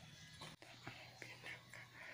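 Near silence, with a faint, indistinct voice in the background and a few soft ticks.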